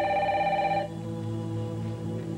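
A telephone ringing: one warbling ring about a second long that stops abruptly, over soft background music.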